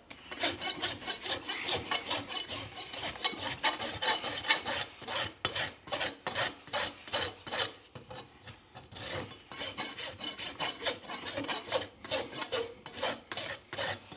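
Farrier's rasp filing the wall of a freshly shod horse's hoof, in quick, even back-and-forth strokes at about three to four a second, a little softer around the middle. This is the finishing of the hoof wall after nailing on.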